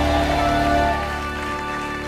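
Background music of sustained, held chords over a steady low bass note, with no speech.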